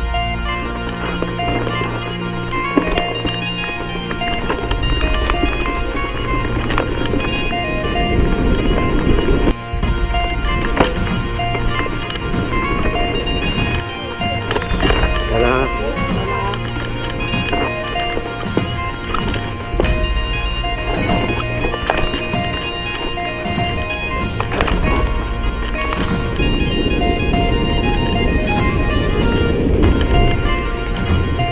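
Background music playing over the rumble of an enduro mountain bike descending a rocky dirt trail: tyres rolling over stones and roots, with frequent knocks and rattles from the bike.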